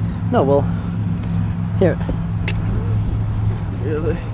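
A man's short shouted curses, three of them a second or two apart, cursing in dismay over a camera that has just smashed. Under them runs a steady low hum, with a single sharp click about halfway through.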